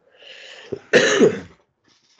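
A man coughs once, loudly, about a second in, after a short noisy breath.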